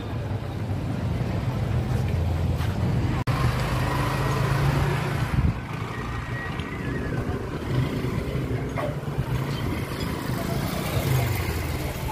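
Busy street ambience with motor traffic: a steady low rumble of engines, with a brief break about three seconds in.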